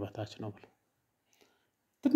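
A voice speaking briefly at the start, then near silence with one faint click about a second and a half in.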